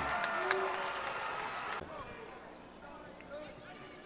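Basketball arena sound: crowd noise dying away after a dunk, then, after a sudden drop about two seconds in, a quieter court with faint squeaks and a ball bouncing.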